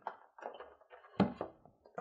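Hands handling a clear plastic card tray taken from a trading-card deck box: light crackling of the plastic and small clicks, with a sharper tap a little past a second in and another near the end.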